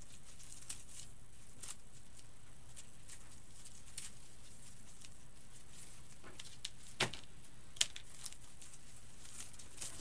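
Artificial pine greenery stems handled and moved about, with faint rustling and a few scattered sharp ticks and clicks, the loudest about seven seconds in.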